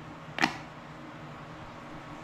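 A single short, sharp click about half a second in, over steady room noise.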